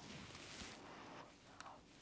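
Near silence: room tone, with only a faint soft rustle and a tiny click.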